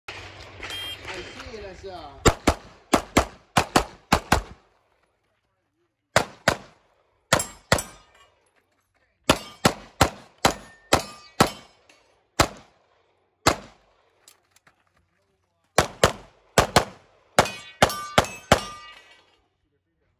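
Handgun fired in quick strings, about thirty shots in all, with short pauses between strings. Some shots are followed by the brief ring of steel plate targets being hit. Voices are heard in the first two seconds, before the first shot.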